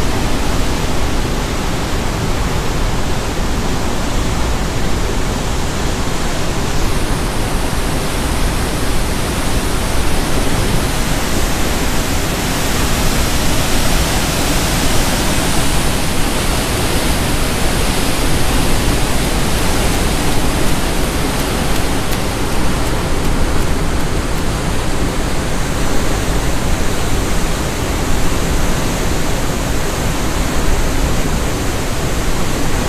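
Water rushing through a dam's spillway, a loud, steady rush with no breaks.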